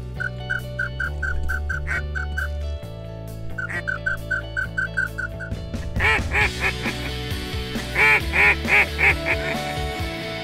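Sure-Shot duck call blown by hand: two runs of quick, evenly spaced short notes, then louder quacks about six seconds in and four loud quacks near the end. Background music plays underneath.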